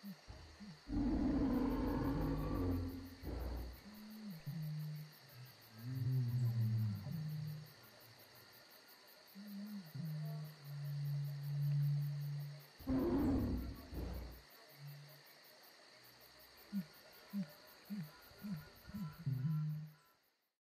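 Jungle soundscape sound effects: two loud creature roars, one about a second in and one about thirteen seconds in, with low animal calls between them and a steady high insect-like drone. A run of short calls comes near the end.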